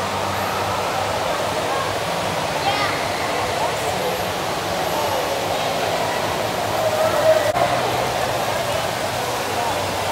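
Indoor water park hall ambience: a steady wash of running water under the chatter of many people.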